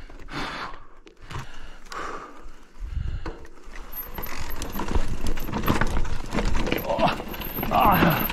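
Electric mountain bike rattling and clattering over a rough, stony dirt descent: dense knocks from the frame, chain and suspension, getting busier about three seconds in. The rider's heavy breathing is audible at first, and a short vocal grunt comes near the end.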